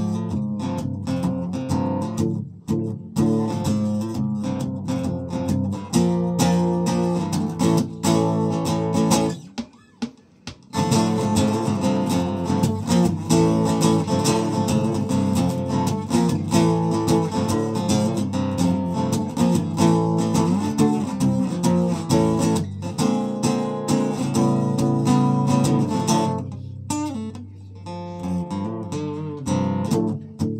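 Solo acoustic guitar playing the instrumental intro of an original song, chords ringing steadily, with a brief stop about ten seconds in before the playing resumes.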